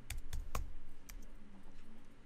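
Computer keyboard keystrokes: about five sharp, irregular key clicks in the first second, then a few fainter ones, as a file name is typed into a save dialog.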